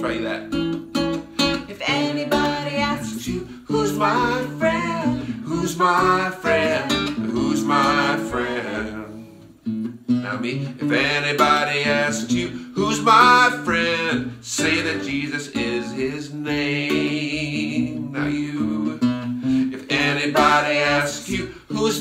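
Acoustic guitar strummed under a man's and a woman's voices singing a simple song phrase by phrase, each line sung and then echoed.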